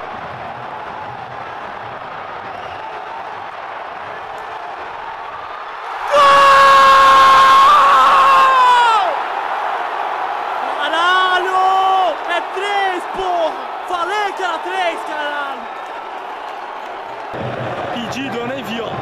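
Football stadium crowd with a steady murmur, then about six seconds in a sudden loud eruption with one long held shout close by, followed by a run of shorter shouts, as fans cheer what they take for a goal but which was not one.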